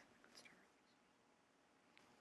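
Near silence: room tone, with a faint brief tick about half a second in.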